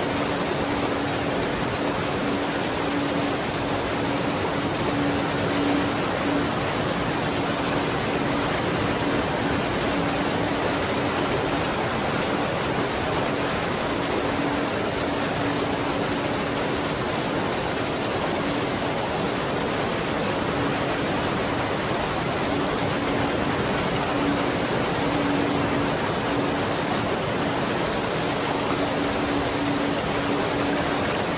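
A waterfall's steady rush of falling water, with a pure 285 Hz tone mixed in under it that grows stronger and weaker every few seconds.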